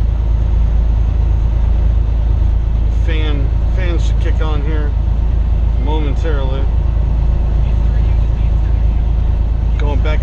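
Semi truck's diesel engine and road noise droning steadily inside the cab, a deep even rumble while the truck pulls up a mountain grade under load, its engine temperature rising a little.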